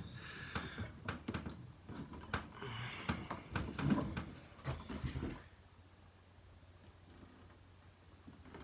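Close handling noises, scattered clicks and knocks, mixed with heavy breathing over the first five seconds, then quiet.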